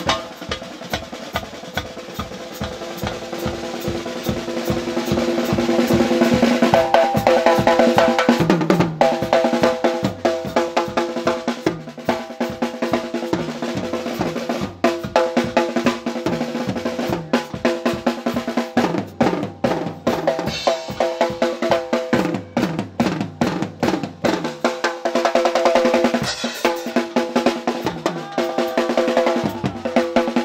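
Drum kit played fast, with rapid rolls and beats on snare, toms and bass drum, over a held melody line from a pitched instrument whose pitch slides in the middle of the passage.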